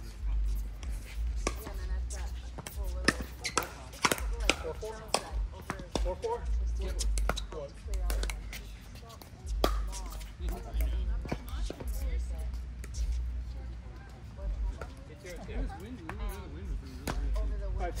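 Pickleball paddles hitting a plastic ball in a doubles rally: sharp, irregular pops, a few to several seconds apart, some louder and some fainter.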